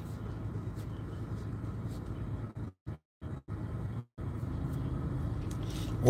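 Steady low rumble of a car interior with the engine running. The sound drops out to silence a few times for a moment in the middle.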